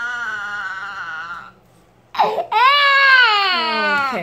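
Four-month-old baby crying during her vaccination shots: a wail that trails off, a half-second pause for breath, then a sharp gasp and a louder long wail that falls in pitch.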